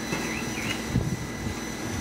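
Steady low rumble of background noise, like a distant vehicle, with a few faint high chirps in the first second.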